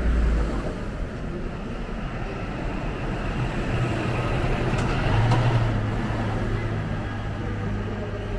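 A diesel tour coach driving past: the engine's low drone and tyre noise grow to their loudest about halfway through as it goes by, then fade as it pulls away.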